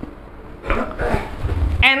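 A pause in a man's amplified lecture, filled with a low rumble and faint murmuring. His voice comes back loudly near the end.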